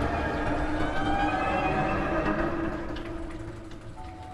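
A dark, droning sound bed, a low rumble under many held tones with a few slowly rising ones, fading away over the last second or so.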